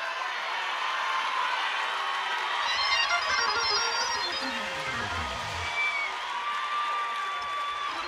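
Congregation cheering and shouting, with organ music coming in about two and a half seconds in. Its low notes slide up and down under held chords.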